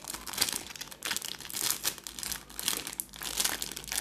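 Plastic ice cream bar wrapper crinkling and crackling as it is peeled open by hand, in a quick irregular run of crackles.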